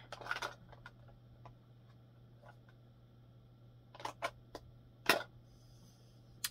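Plastic makeup compacts being handled and set down: a brief rustle at the start, a few light clicks around four seconds in, and one sharp, louder click a second later.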